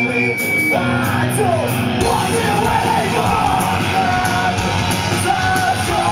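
Live rock band playing loud with sung and yelled vocals; the full band comes in about two seconds in, thickening the sound.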